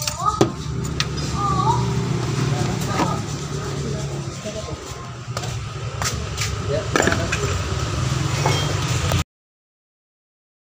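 Clicks and knocks from handling the oil filler cap and the plastic engine-oil jug during an engine oil top-up, over a steady low hum. The sound cuts off abruptly about nine seconds in.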